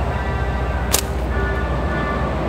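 Steady low rumble of road traffic, with one sharp snap from a slingshot shot about a second in.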